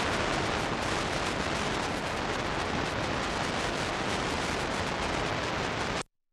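Loud, steady static hiss from a blank, unrecorded stretch of analog videotape playing back, cutting off suddenly at the end.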